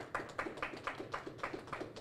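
A few people clapping lightly, in quick, sparse claps at about five a second.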